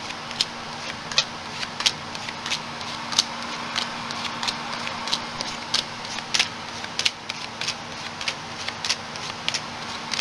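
Tarot cards being shuffled by hand: irregular crisp clicks and snaps of the cards, a little over one a second, over a steady low hum.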